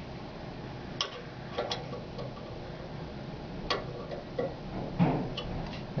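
A few separate sharp metallic clicks and taps, spread over several seconds, from a wrench and clamp fittings handled while the transducer holder is tightened to its stainless support bar. A low steady hum runs underneath.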